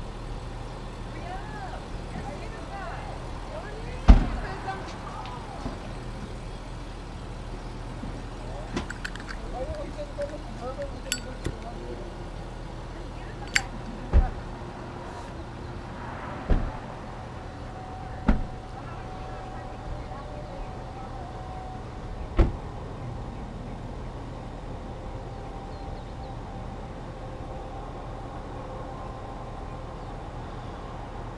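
A series of single sharp thumps a few seconds apart, the loudest about four seconds in, as a car's doors are opened and shut and bags are loaded into it, over faint far-off voices and a steady low hum.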